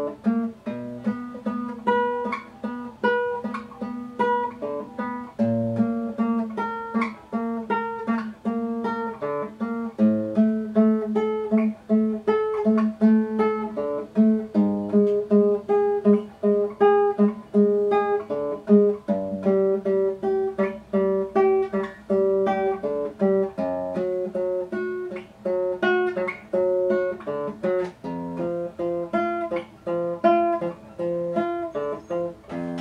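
Nylon-string classical guitar played fingerstyle: a steady run of single plucked notes, a few each second. It is a position-shifting technique exercise that keeps returning to the note F in different octaves and places on the neck.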